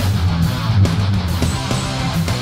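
Two electric guitars, a Michael Kelly Hex and an ESP Eclipse, playing a fast heavy-rock part over a backing track of drums and bass.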